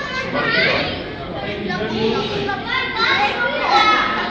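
Children's voices talking and calling out over a background of other chatter, with several high-pitched excited calls, loudest near the end.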